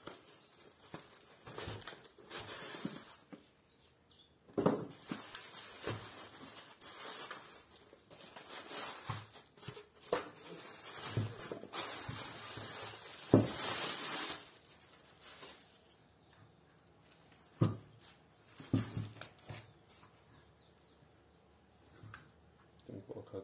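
Unpacking a small electric surface water pump: cardboard packaging and a plastic bag rustling and crinkling as the pump is pulled out, with a few sharp knocks as things are set down on the wooden bench.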